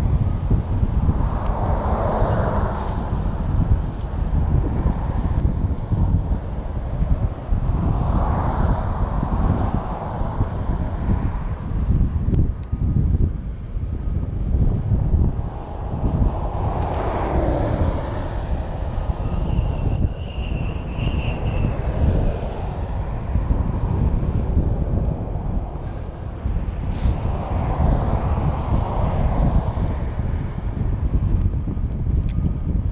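Wind buffeting the microphone of a moving bicycle, with cars on the adjacent highway passing about five times, each one's tyre and engine noise swelling and then fading.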